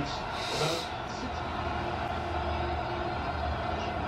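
A person sighs near the start. Behind it runs the steady, low background sound of a football game on television, in a gap in the commentary.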